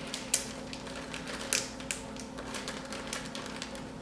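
Plastic zip-top bag being pressed shut by hand: a few irregular sharp clicks a second from the zipper track and plastic.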